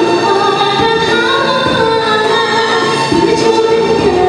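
A young woman singing solo through a microphone and PA over musical accompaniment, holding long notes.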